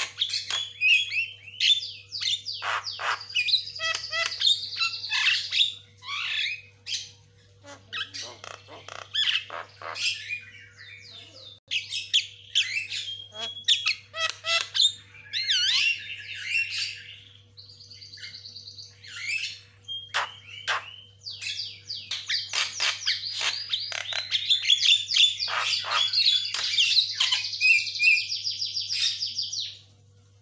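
Javan myna (jalak kebo) singing in a fast, chattering stream of chirps, whistles and squawks, with short lulls about a third and about half of the way through.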